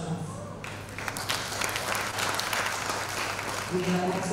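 Audience applauding: many hand claps start about half a second in and die away just before the woman's voice comes back near the end.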